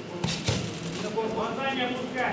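Two sharp blows of boxing gloves landing, about a quarter and half a second in, followed by a raised voice calling out from ringside.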